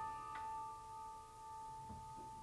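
Soft, slow piano music: a chord held and fading away, with one light note added about half a second in.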